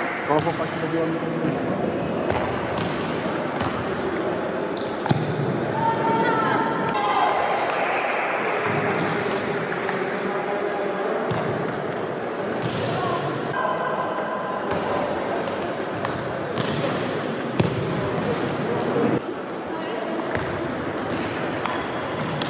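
Table tennis rallies: the ball clicking sharply off bats and table, over a steady chatter of voices in a large sports hall.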